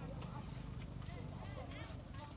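Indistinct voices talking in the background, with scattered light clicks.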